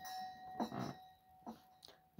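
A man's soft, breathy laughter fading out over the first second or so, over a faint steady ringing tone. Then near silence, with a couple of tiny clicks.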